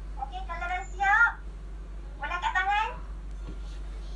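Two high, wavering calls: a longer one that rises and falls in the first second or so, then a shorter one about two and a half seconds in.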